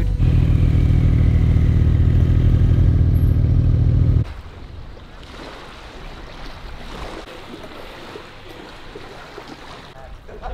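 Ferrari 458 Spider's naturally aspirated V8 running loud and steady at low revs, heard from the open cockpit. About four seconds in it cuts off abruptly, leaving only a much quieter outdoor hush.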